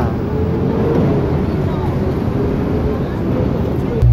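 Steady low rumble of busy city street traffic, with cars passing and no single sound standing out.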